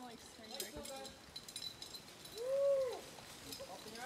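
Faint distant voices, with one drawn-out call that rises and falls in pitch a little past halfway.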